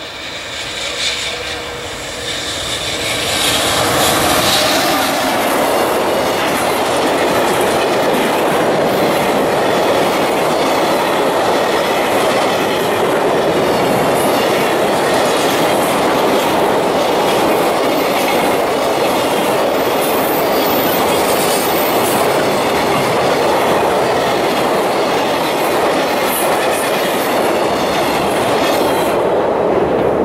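A JR Freight EF210 electric locomotive and its long high-speed container freight train passing at speed. The noise builds over the first few seconds as the locomotive draws level, then holds as a steady loud run of wheels on the rails while the container wagons go by.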